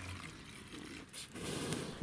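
Kerosene poured from a glass bottle into a plastic spray bottle: a faint trickle of liquid that grows a little louder in the second half.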